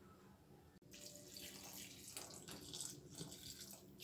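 A thin stream of water being poured into a kadai of cooking curry, a faint splashing trickle that starts about a second in.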